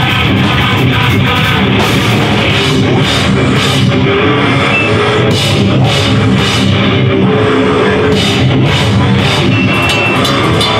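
Hardcore band playing live and loud: distorted electric guitars, bass and a drum kit, with cymbals crashing repeatedly through the second half.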